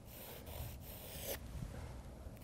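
A pen tracing round a stockinged foot on a paper pad: soft, continuous scratching and rubbing on the paper, with one sharper stroke a little past halfway.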